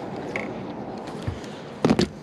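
Handling noise from fishing gear on a boat: a few faint clicks and a soft thump, then one sharp knock near the end.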